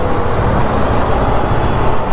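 Motorcycle riding noise picked up by a helmet-mounted action camera: a steady rush of wind over the microphone with engine and road noise underneath.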